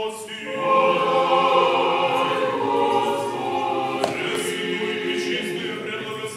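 Orthodox church choir singing a liturgical hymn in many voices, swelling to full volume about half a second in. A short click sounds about four seconds in.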